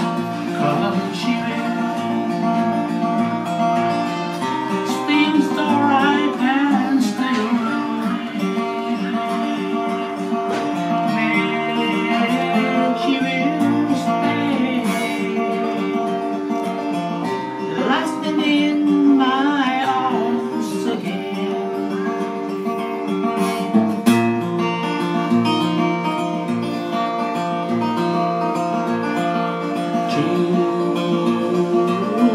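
Steel-string acoustic guitar fingerpicked in a gentle, flowing accompaniment, with a man singing over it in phrases, his voice wavering with vibrato.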